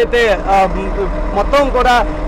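A man speaking continuously in Telugu, a news reporter's piece to camera, over a steady low rumble.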